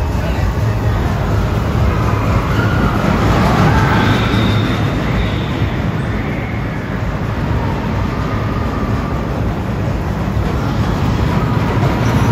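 Roller coaster cars running along a steel track, a steady loud rumble with some rising and falling higher tones about three to five seconds in; the cars pass close by near the end.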